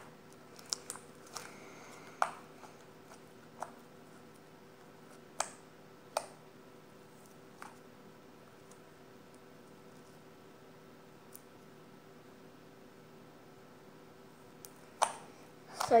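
Slime being kneaded and squeezed by hand, giving scattered soft clicks and squelches, most of them in the first eight seconds, then a stretch with little but a faint steady hum.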